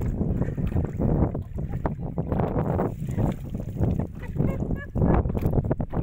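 Strong gusty wind buffeting the microphone: a loud, steady low rumble that surges and falls irregularly.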